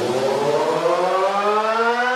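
Build-up in an electronic dance remix: a synth tone with several overtones rising steadily in pitch over a hiss, without drums.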